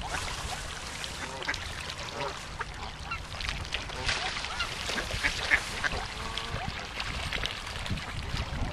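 Mallard ducks quacking repeatedly on a pond, in many short calls, with a splash of a duck flapping on the water about four seconds in.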